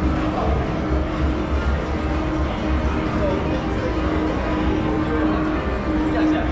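Casino gaming-floor ambience: steady music and electronic slot-machine sounds over a low murmur of voices.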